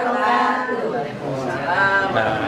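Several people's voices speaking together at once, overlapping.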